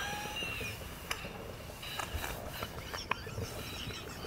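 Breathless, almost voiceless laughter. A faint high wheezing squeal trails off in the first second, then only soft gasps and a few small clicks over quiet room sound.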